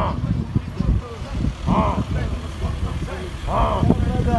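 A group of men outdoors calling out loudly about every two seconds, over a dense, rough low rumble, recorded on a phone.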